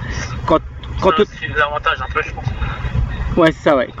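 Voices talking in short snatches over a steady low rumble.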